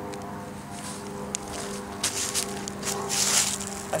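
Canvas painter's tarp rustling and scraping as it is handled, in bursts from about two seconds in, over a steady low hum.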